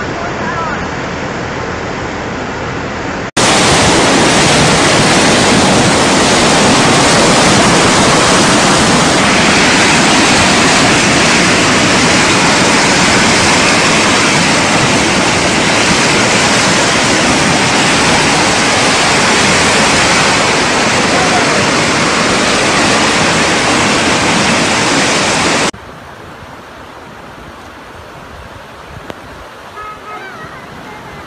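Muddy floodwater rushing in a steady, dense rush of water. About three seconds in it cuts abruptly to a much louder, harsher rush, which drops suddenly to a quieter rush near the end.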